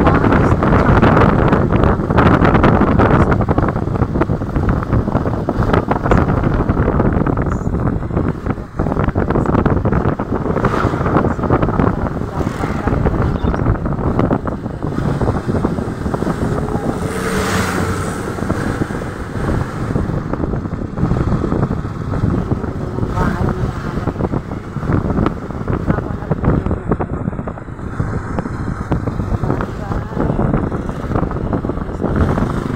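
Wind rushing over the microphone, mixed with the engine and road noise of the small motor vehicle being ridden in, steady throughout.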